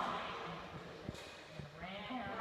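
A person's drawn-out, wavering voice, with a few light footfalls on the matting.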